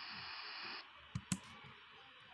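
Two quick clicks of a laptop's pointer button, a fraction of a second apart, advancing a presentation slide. A faint steady hiss cuts off just before them.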